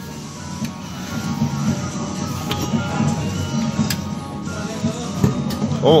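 Claw machine's crane motor whirring as the claw moves and lowers into the pile of plush toys, over steady music.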